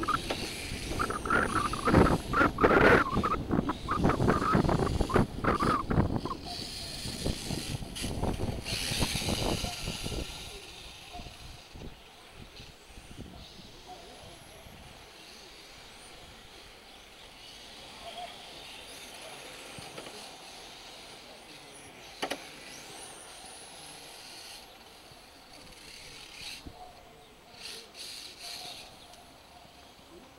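Electric 1/10-scale RC touring cars running on an asphalt track, their motors giving a high whine that rises as they accelerate. The sound is loudest in the first ten seconds while the cars are close, then fainter as they race on the far side of the track.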